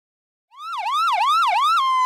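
Electronic siren wailing in quick rising-and-falling sweeps, about three a second, starting about half a second in and settling on one steady tone near the end.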